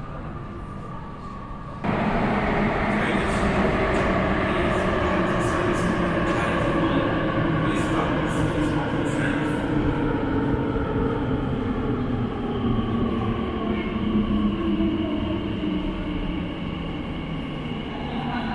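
Elizabeth line Class 345 electric train arriving into an underground platform. The rumble comes in suddenly and loudly about two seconds in, then the train slows along the platform with a whine that slowly falls in pitch and a gradually fading rumble.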